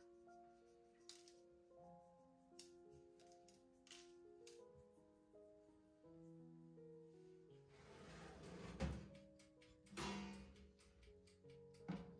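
Quiet background music of slow, held notes. Faint light taps run under it, with two short rustling noises about eight and ten seconds in and a sharp click at the very end.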